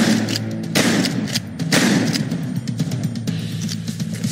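A volley of gunshots, with several sharp reports about a second apart near the start and smaller shots between, over a low droning background music bed.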